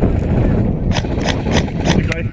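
Airsoft rifle firing several quick single shots in the second half, each a sharp snap, about three a second, over a low wind rumble on the microphone.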